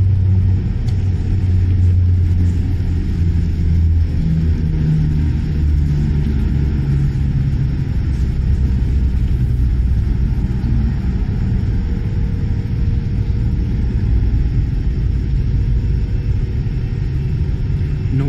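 A loud, steady low rumble with a hum that wavers slightly in pitch.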